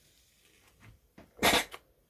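Philips steam iron giving one short blast of steam, a brief hiss about one and a half seconds in, shot off to clear water spits before steaming the velvet.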